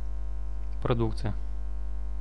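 Steady electrical mains hum with its overtones, the kind a recording setup picks up. About a second in there is a brief, half-second voice sound with no words.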